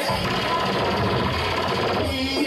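Loud sound-system playback with a fast, machine-like rattle of pulses in place of the singing, with a steady tone running through it.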